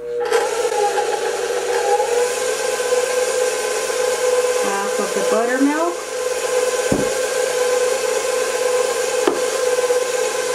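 Stand mixer switched on and running steadily at one speed, its motor whine holding a constant pitch as it mixes flour into butter-cake batter. A short rising sound breaks in briefly about five seconds in.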